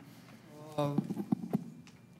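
A voice on a microphone saying a hesitant "uh", with three or four sharp clicks over the next second.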